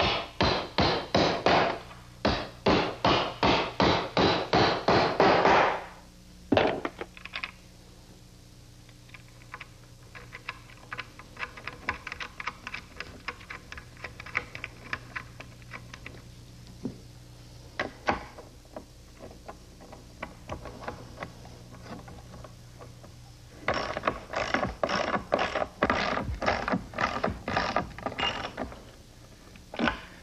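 Ratchet wrench clicking in quick runs as the nuts and washers are tightened down onto 3/8-inch carriage bolts through the picnic table's leg joints. There are loud runs at the start and near the end, a fainter run in the middle, and a couple of single knocks in between.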